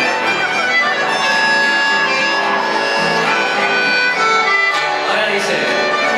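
Live chamamé music: a piano accordion playing a melody of long held notes over an acoustic guitar.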